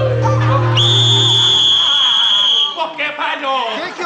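A long, shrill whistle blast, held on one high pitch for about two seconds, over voices and music.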